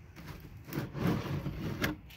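A five-gallon plastic gas can being handled, rubbing and scraping against the ladder and strap, with a sharp knock near the end.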